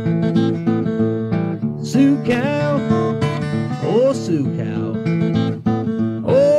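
Old-time string band music in an instrumental passage: acoustic guitar picked in quick, sharp notes, with other string parts sliding between notes.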